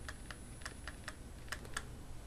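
Faint, irregular keystrokes on a computer keyboard, with a quick cluster of taps about a second and a half in.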